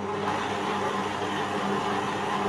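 Stand mixer motor running steadily as its beater works butter into a yeast dough, turned up one speed notch just after the start so the hum grows a little louder.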